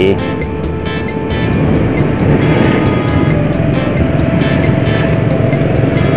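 Motorbike riding along with a steady engine and road rumble, under background music with a steady beat.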